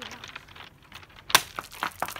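A heavy rock hitting the beach stones with one sharp crack about a second and a half in, followed by a couple of lighter clicks; it does not break apart.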